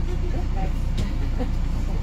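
Tour bus engine running with a steady low rumble, heard from inside the bus, with a single sharp click about a second in.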